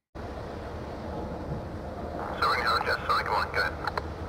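Steady outdoor rumble that starts suddenly; from about halfway in, indistinct voices of people talking are heard over it.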